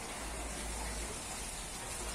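Steady, faint background noise: an even hiss over a low rumble, with no distinct event.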